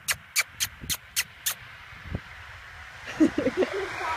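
A quick run of about seven sharp clicks, about four a second, made to call horses over. A short voiced call follows about three seconds in.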